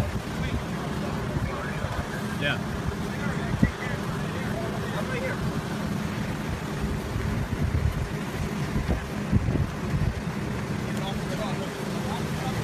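Storm wind buffeting the microphone in a steady low rumble, with faint voices in the background and one brief thump about three and a half seconds in.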